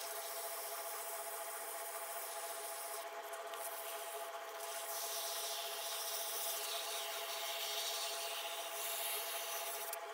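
Abrasive cloth rubbing on a turned metal part spinning in an Atlas 10" lathe's chuck: a steady hissing scrape over a steady hum from the running lathe, a little louder in the second half. The part is being polished down to fit.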